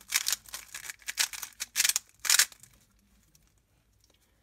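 A plastic 3x3 speed cube being turned fast by hand: rapid clattering clicks of its layers snapping round, which stop about two and a half seconds in.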